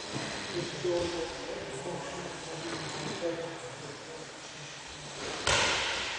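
Indistinct voices talking in a gym hall, with a sudden loud burst of noise about five and a half seconds in.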